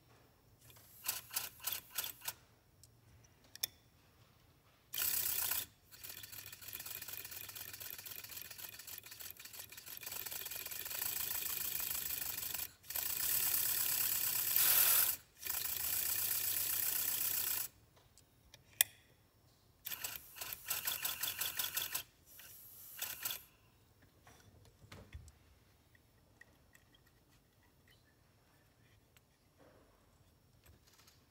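Accucraft Ruby live-steam locomotive chassis driven on compressed air through a hose: its cylinders exhaust in rapid chuffs with rushing air as the wheels spin. It runs in several bursts, the longest lasting about twelve seconds from about five seconds in. It is being test-run to judge the piston-valve timing.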